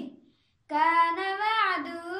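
A boy reciting the Quran in a melodic chanted voice. A held note falls away and ends, a brief silence follows, and then a new phrase begins with its pitch rising and falling.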